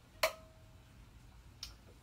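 Manual caulk gun trigger squeezed to push crack-injection epoxy from the cartridge through the hose into a wall port: one sharp click about a quarter second in, with a short ringing tone after it, then a fainter click near the end.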